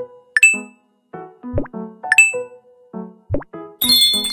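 Short, bouncy synthesized outro jingle of quick plucked notes. It is punctuated by two bright chime 'dings', about half a second in and a little past two seconds. There are low sweeping thumps at intervals, and near the end a dense, shimmering bell-like flourish.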